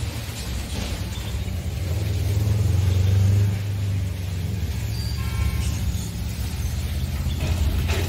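A steady low mechanical rumble from running machinery. It swells about two seconds in and eases back a little past three seconds.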